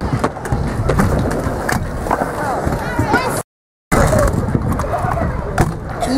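Hard small wheels of skateboards and stunt scooters rolling over concrete and wooden ramps, with sharp clacks of decks and wheels hitting the surface. There is a short gap of complete silence about halfway through.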